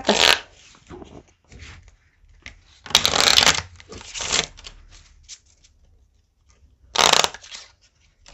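A deck of poker playing cards being riffle-shuffled by hand. Two quick riffles sound, one about three seconds in and one near the end, with a shorter burst as the cards are bridged back together. Soft clicks and taps come in between as the deck is cut and squared.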